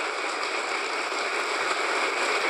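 Audience applause, many people clapping at a steady level.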